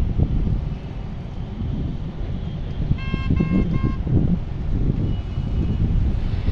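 Road and wind rumble from a moving vehicle on a highway, with a vehicle horn giving three short beeps in quick succession about three seconds in.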